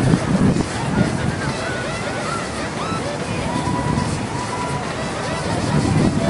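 Wind buffeting an outdoor microphone, an uneven low rumble, with faint high chirps and a thin held tone in the middle of it.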